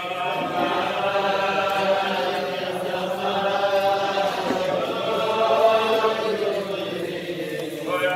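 A crowd of Hasidic men singing a niggun together in unison, many voices blended on long held notes that move slowly from pitch to pitch, with a brief breath near the end before the next phrase.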